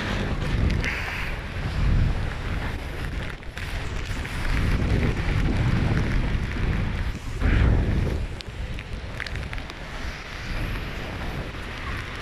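Strong wind buffeting the microphone in gusts: a low rumble that swells and eases, loudest about two seconds in and again near eight seconds.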